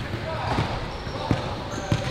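Basketballs bouncing on a hardwood gym floor: a few separate, irregularly spaced thuds over the low background of the hall.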